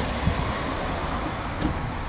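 Steady low rumbling background noise with an even hiss over it, and no distinct events.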